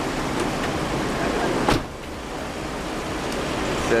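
A van's sliding door shutting with one sharp thud a little under halfway through, over steady vehicle and street noise.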